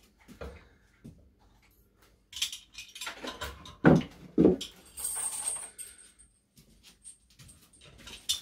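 Pliers and a large nail clinking, knocking and scraping against a bench vise as the nail is bent and straightened into a belt-buckle shape: scattered light clicks, two firmer knocks in the middle, and a short high metallic scrape about five seconds in.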